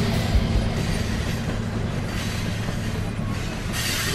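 A train rolling along the rails: steady rail noise with a low drone underneath.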